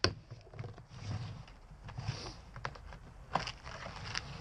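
Clear plastic tackle box being handled: a sharp click right at the start, then scattered small plastic clicks and rattles as lures are lifted out of its compartments.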